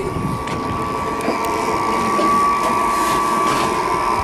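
Saltwater fishing reel's drag clicking and buzzing as a hooked fish pulls line off it, over a steady high whine.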